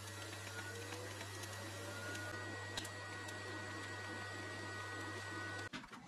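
TIG welding arc burning steadily, a low buzzing hum with hiss, while filler rod is fed into a steel round-tube joint. The arc cuts off suddenly near the end, followed by a couple of light handling clicks.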